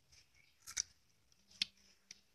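Two short, crisp clicks about a second apart from hard unripe green apricots being eaten.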